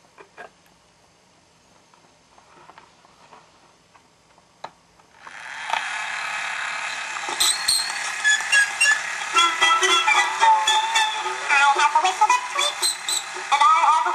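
Lumar clockwork toy gramophone playing a 78 rpm children's record. A few faint clicks come first as the record is set in place. About five seconds in, loud surface hiss starts as the needle runs in the groove, and about two seconds later the record's music begins, full of crackle.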